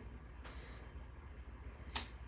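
Faint low steady hum, with one sharp click near the end as a clear acrylic stamp block is handled on the paper.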